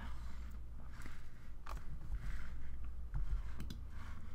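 A few faint computer-mouse clicks over a low steady hum, as the browser window is grabbed and dragged to resize it.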